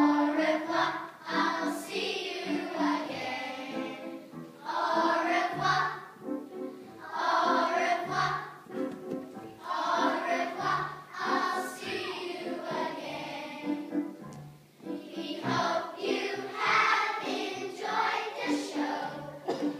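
A group of children singing together, in phrases a few seconds long with short pauses between.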